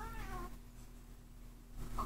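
A ring-necked parakeet's short call falling in pitch, faint and heard through computer speakers, with a fainter second call near the end.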